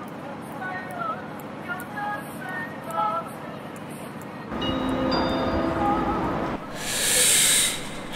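Train sound effect: after quiet platform ambience with short chirps, a low rumble begins about halfway through, swells into a loud rushing hiss near the end, then cuts off.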